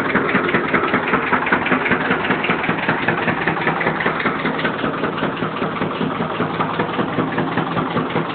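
Engine-driven sugarcane crusher on a juice cart running steadily while cane is pressed for juice, its engine beating in a fast, even rhythm.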